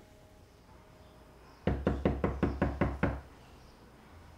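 A quick run of about eight sharp knocks, evenly spaced over about a second and a half, starting a little before the middle.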